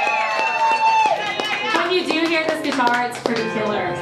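A woman singing long held notes into a microphone, accompanied by a strummed acoustic guitar.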